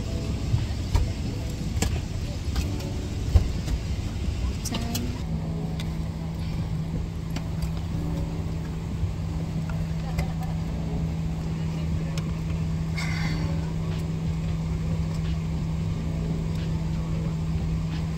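Airliner cabin noise: a steady low rumble, joined about five seconds in by a steady low hum, with scattered light clicks and rustling from handling close to the microphone.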